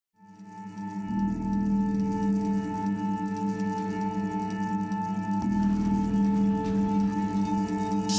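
Electronic music: a sustained drone of several steady ringing tones that fades in from silence over the first second, with a low bass layer joining about a second in.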